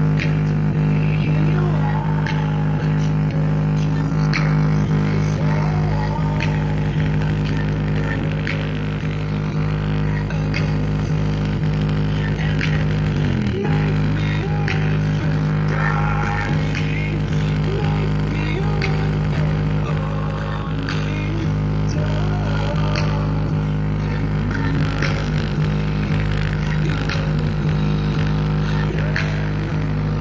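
Bass-heavy music played loud through a Grasep DQ-15 portable speaker, its woofer cone jumping: a steady deep bass drone holds one low note throughout, with fainter wavering sounds above it.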